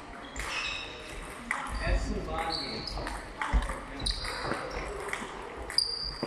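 Table tennis rally: a celluloid-type ping-pong ball clicking sharply off bats and the table about twice a second, with short high squeaks from shoe soles on the hall floor during footwork, echoing in a gym hall.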